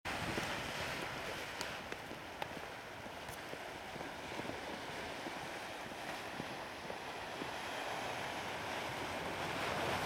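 Sea surf washing against a rocky shore: a steady rushing hiss, with light wind on the microphone.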